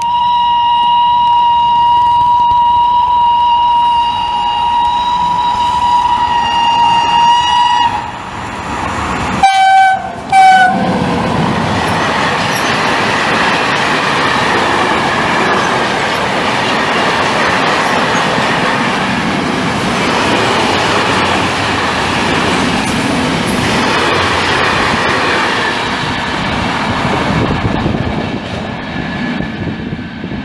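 Freight locomotive horn sounded as a driver's greeting: one long steady blast of about eight seconds, then two short blasts on a lower note. A freight train then passes at speed, its wagons rumbling with rhythmic wheel clatter over the rail joints.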